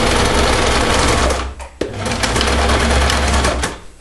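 Electric domestic sewing machine running a straight stitch through paper and a plastic page protector, in two runs with a brief stop just under two seconds in.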